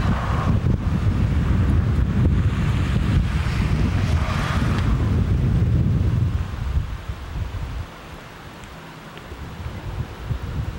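Wind buffeting the camcorder's microphone in a heavy, irregular low rumble that eases off about seven seconds in, leaving a quieter outdoor hiss.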